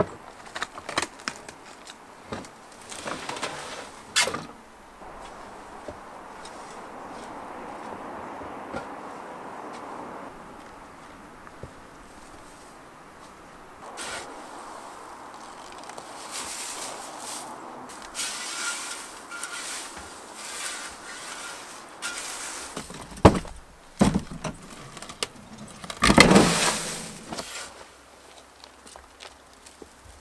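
Shovelling work: a few knocks and a thump, then a steel shovel scraping and scooping wet wood shavings out of a plastic bulk bag and tossing them into a wooden compost bin, with the bag rustling. Irregular scrapes and crunches, the loudest a few seconds before the end.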